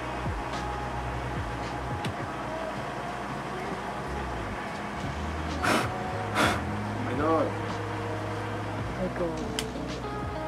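Two short, sharp puffs of breath, a little over halfway through, as a man blows on a GoPro camera he is holding, followed by a brief voiced hum. Underneath are a low steady hum and soft background music.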